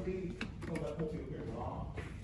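Indistinct voices talking, with a few light clicks about half a second in.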